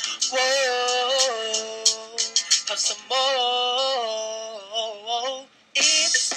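A song with a backing track: a singer holds long notes, moving between steady pitches in sudden steps. Near the end the sound cuts out for a moment, then the music comes back.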